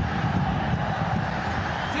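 Steady stadium crowd noise, an even roar from the stands carried on the broadcast sound.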